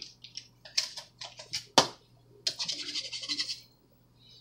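Plastic piping bag crinkling as buttercream is squeezed out through the tip onto a cake layer: a scatter of small clicks with one sharper snap, then about a second of rapid rasping.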